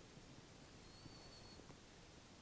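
Near silence: room tone, with one faint, slightly wavering high-pitched whistle lasting about a second in the middle.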